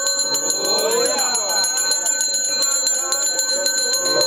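A brass puja hand bell (ghanta) rung fast and continuously: a steady bright ring made of rapid, even strokes.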